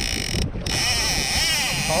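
A man laughing and hooting with excitement, starting about a second in, over a steady rush of wind noise on the microphone.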